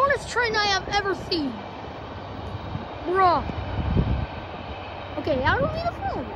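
A person's voice rising and falling in pitch, in short bursts without clear words, over a low rumble.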